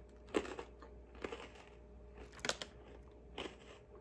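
A person chewing crunchy freeze-dried banana pieces: a few short, crisp crunches spread out over a quiet background.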